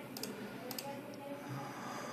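Quiet room tone with a few faint, short clicks from a computer being operated.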